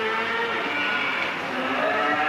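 A herd of cattle lowing in stockyard pens, several long overlapping moos at different pitches.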